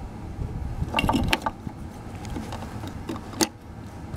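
Hard plastic clicks and scrapes of a halogen headlight bulb and its plastic socket being turned and seated in the headlight housing: a cluster of clicks about a second in and a single sharp click near the end, over a low background rumble.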